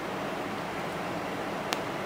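Steady hiss of room noise, with one sharp click near the end as the portable speaker's power button is pressed.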